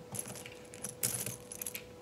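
Translucent plastic bingo chips clicking and clattering against each other as a hand picks through a pile of them on a table, in a few short bursts of light clicks.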